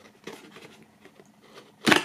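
A thin cardboard box lid being prised open by hand: faint scraping and rustling of cardboard, then a short sharp snap near the end as the flap comes free.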